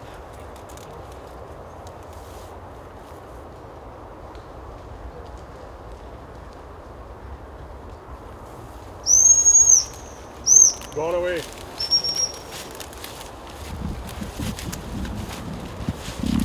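Gundog whistle blown to direct a working retriever: one loud, high whistle blast about nine seconds in, a short blast a second later, then a fainter, shorter one.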